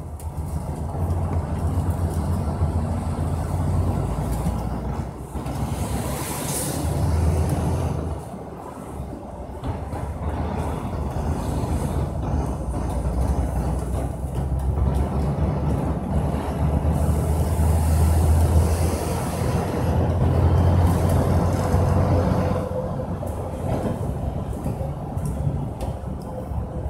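A vehicle on the move: a low engine sound mixed with road and wind noise, swelling and easing several times.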